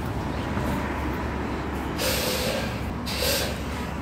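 Steady low rumble of city street traffic, with a city bus's air brakes hissing twice: about a second long at two seconds in, then a shorter hiss just after three seconds.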